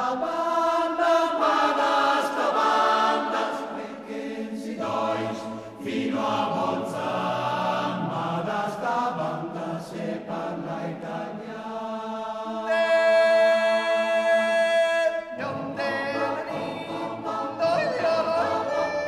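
Mountain choir singing a cappella in several-part harmony, holding one long chord for about three seconds near the end before moving on.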